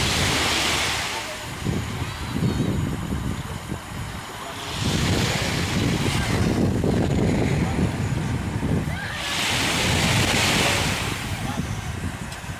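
Small waves breaking and washing up a sandy shore, each wash swelling and fading about every four to five seconds, with wind rumbling on the microphone underneath.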